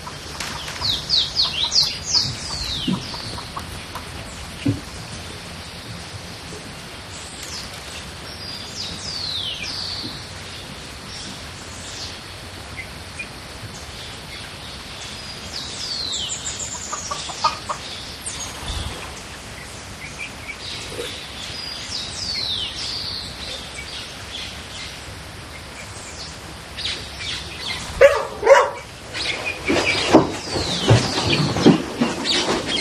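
Birds calling in clusters of short, high, falling chirps every few seconds over a quiet background, with a few knocks and rustles near the end.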